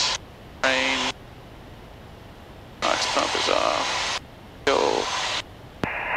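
Aircraft headset radio and intercom audio cutting in and out: a short spoken word about half a second in, then two bursts of hissy, garbled radio transmission a few seconds later. A faint low engine hum fills the gaps between.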